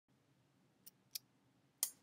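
Three short clicks in near quiet: two faint ones close together about a second in, and a louder one near the end.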